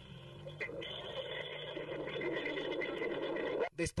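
Steady noise of a Long March 3B rocket lifting off, from the launch footage's own soundtrack, with an indistinct, radio-like voice under it. The sound cuts off abruptly near the end.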